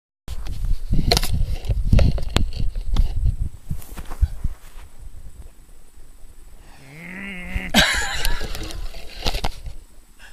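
Camera handling noise: low rumble and a run of knocks and bumps for the first few seconds as the camera is set down. About seven seconds in comes a brief wavering pitched sound, followed by a burst of rustling.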